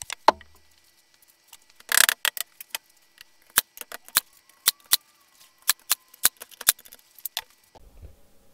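An 18-gauge brad nailer driving brad nails into an MDF cabinet brace, a quick series of a dozen or so sharp snaps, coming two to three a second in the second half.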